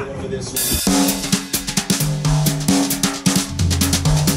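Music with a drum-kit beat and a bass line that steps between notes, coming in loudly about a second in after a quieter start.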